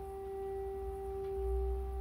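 Distant air-raid siren holding one steady tone, with a low rumble swelling in about one and a half seconds in.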